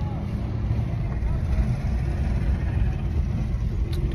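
A car being driven, heard from inside its cabin: a steady low rumble of engine and road noise.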